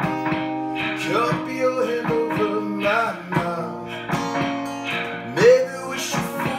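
Acoustic guitar strummed over layered, sustained looped parts, with a man singing long wordless notes; one rises in pitch and is the loudest moment near the end.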